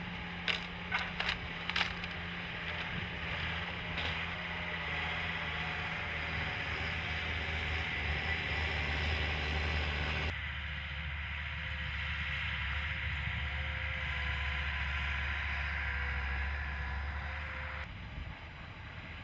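ALLTRACK tracked carrier's engine running steadily as it crawls over snowy ground, with track noise; in the first two seconds several sharp cracks as sticks and branches snap under the tracks.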